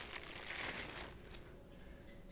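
Clear plastic bag crinkling faintly as a small lens is pulled out of it, dying down after about a second.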